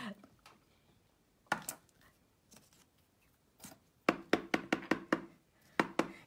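Light tapping as a rubber stamp is inked: one soft knock about a second and a half in, then a quick run of about eight taps, some seven a second, a little after the middle, and one more just before the end.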